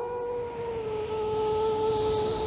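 Background score: a single sustained instrumental note with overtones, held steady after a brief upward glide and easing slightly lower in pitch.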